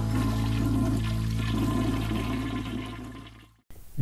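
Toilet flushing, water rushing and draining, over a held final note of music. Both fade out shortly before the end.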